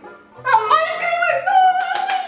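A short sung phrase in a high voice, starting about half a second in and ending on a long held note.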